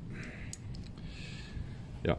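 Faint handling noise: soft rustling with a few light clicks as a metal tensioner roller is handled.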